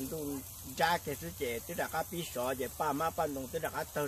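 A man speaking in a run of short phrases, with a faint steady high hiss behind the voice.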